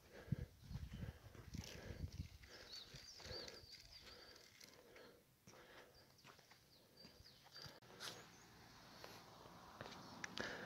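Near silence outdoors: a few faint, irregular low rumbles on the microphone in the first few seconds, and faint bird chirps twice, around the middle and again later.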